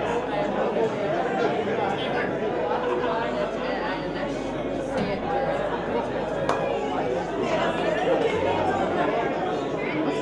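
Crowd chatter: many people talking at once in a large room, a steady hubbub of overlapping voices with no one voice standing out.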